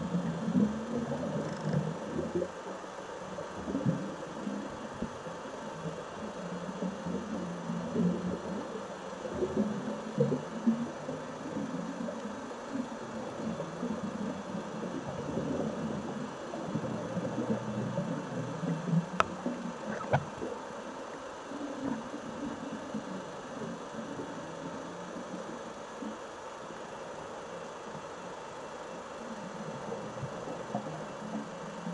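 Muffled underwater sound of scuba divers' exhaled regulator bubbles, a low rumble that swells and ebbs in irregular surges every few seconds. Two sharp clicks come about two-thirds of the way through.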